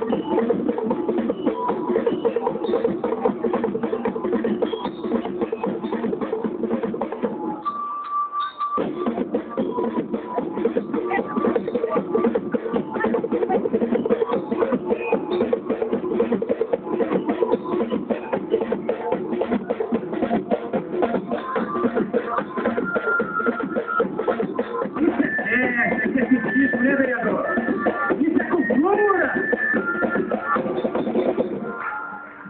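A parade band playing a song, with dense, fast drumming throughout and held pitched notes over it. About eight seconds in, the lower notes drop out for under a second, and higher held notes come in near the end.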